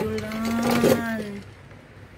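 A person's voice held on one steady note for about a second and a half, then dying away.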